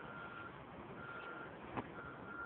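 Faint vehicle reversing alarm beeping, a single high tone on for about half a second roughly once a second, with a light click near the end.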